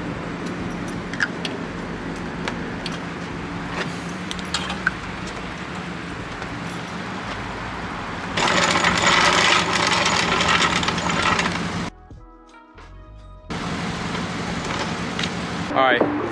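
1990 Nissan 240SX engine idling steadily, a low even hum. About eight seconds in it gives way to louder, hissy background noise, which drops out briefly for a second or so near the end.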